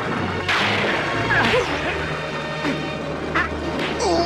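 Cartoon fight soundtrack: dramatic music with steady low held notes, cut by several sharp crashes in a storm, the loudest about half a second in.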